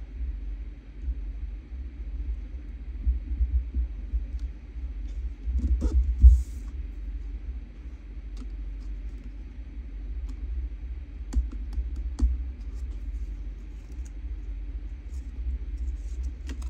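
Cardstock strips being handled and laid down on a cutting mat: light taps and clicks over a low rumble, with a louder knock and a brief paper rustle about six seconds in.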